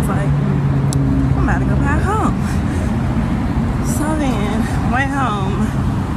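City street traffic noise: a constant roar of passing cars, with a steady low vehicle-engine hum for the first two seconds or so, under indistinct voice sounds.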